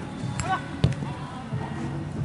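A football struck once by a kick on artificial turf, a single sharp thud a little under a second in.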